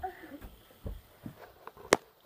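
A few soft thumps and bedding noises as a small child climbs about on a bed and gets under the duvet, with one sharp click near the end.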